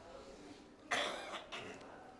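A short cough about halfway through, followed by a fainter one about half a second later.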